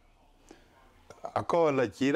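A short near-silent pause, then a man starts speaking again in the second half, after a few soft mouth clicks.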